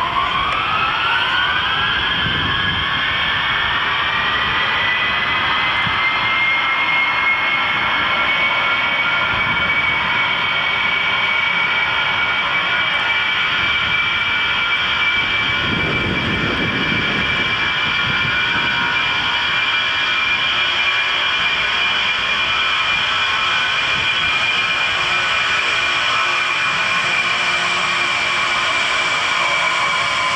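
Lockheed C-5 Galaxy's four TF39 turbofan engines spooling up: a high whine rises in pitch over the first few seconds, then holds steady at high power with a deep rumble under it while the aircraft rolls.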